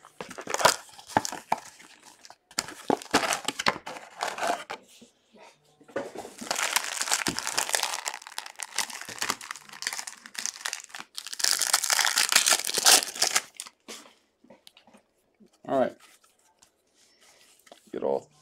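Plastic and foil trading-card pack wrappers crinkling and tearing as packs of football cards are opened by hand. It comes in repeated short rustles, with two longer spells of dense crinkling in the middle.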